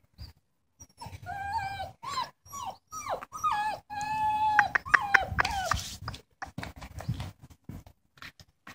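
Belgian Malinois puppy whining, a run of high-pitched drawn-out whines mixed with short yelps over about five seconds, dying away near the end.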